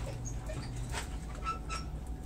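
Guinea pigs and a rabbit chewing and tearing leafy greens, with a few crisp crunches and several short, high squeaks, two of them about one and a half seconds in.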